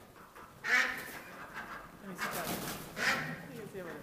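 Ducks quacking: three loud, harsh calls, about a second in, around two and a half seconds, and just past three seconds.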